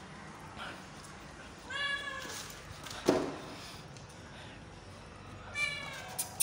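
Kitten meowing twice, once about two seconds in and again near the end. A single sharp knock about three seconds in.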